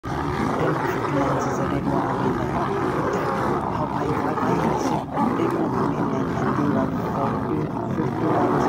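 Several lionesses growling and roaring as they fight a male lion, an unbroken din with a short dip about five seconds in.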